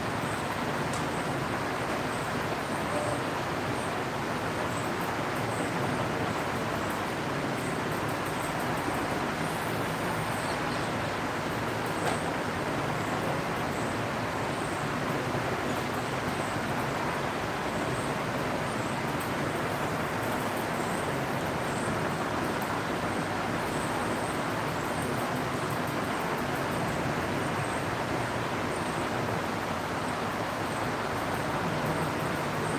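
Steady, even background noise with no distinct events, at a moderate level, like a room fan or traffic heard through a window.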